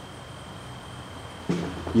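Quiet steady background: a low hum under a thin, unchanging high tone, with no knocks or handling sounds.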